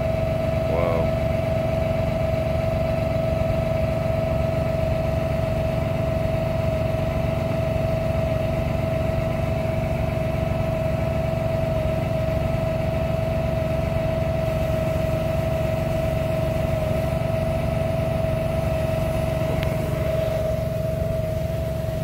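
An engine running steadily at an even speed, with a constant mid-pitched whine over its low pulsing.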